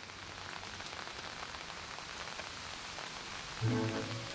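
Steady rain falling on leafy foliage. Music comes in near the end, louder than the rain.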